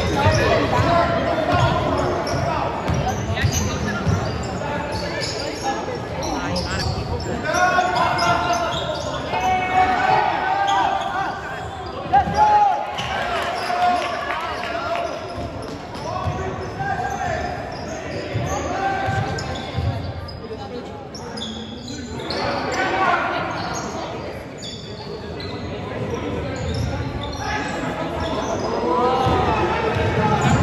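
Basketball being dribbled and bounced on a hardwood gym floor during a game, with voices from players and spectators, all carrying in a large gym.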